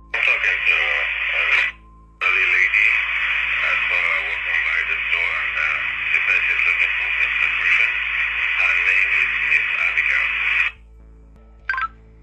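Speech coming through a two-way radio, narrow and hissy with the words hard to make out. There is a short transmission first, then after a brief break a longer one of about eight seconds.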